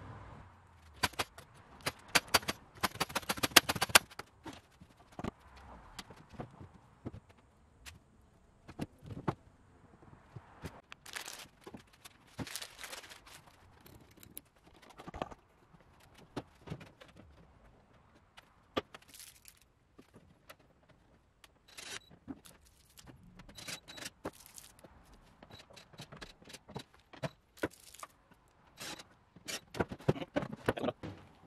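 Intermittent knocks, clicks and scrapes of the wooden cart's door, parts and hardware being handled and moved, with a fast run of clicks about three seconds in.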